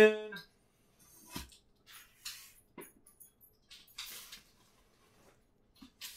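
A knife made from a railroad spike slitting the packing tape and cardboard of a shipping box: several short, scratchy rasps over the first four seconds or so, with a dull knock about a second and a half in.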